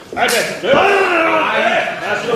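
A sharp slap of a strike landing on bare skin just after the start, followed by loud shouting voices that run on for over a second.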